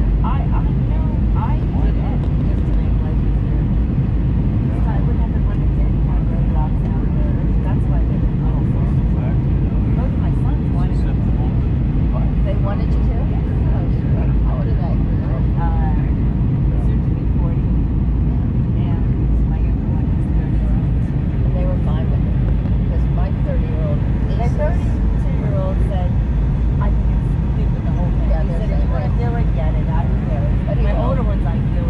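Steady low rumble of an Airbus A319's cabin in descent: engine and airflow noise heard from inside the cabin, with faint passenger chatter over it.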